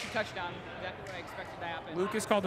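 Faint, indistinct voices talking in the background, with no clear words.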